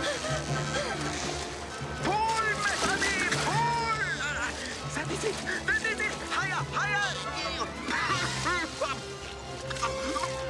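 Film score music with cartoon characters' wordless cries and exclamations over it, and water sloshing and splashing.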